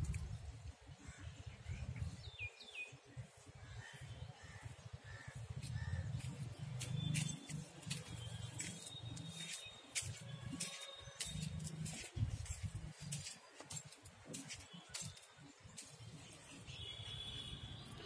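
Faint, scattered bird chirps over a low, uneven rumble and occasional clicks on the microphone.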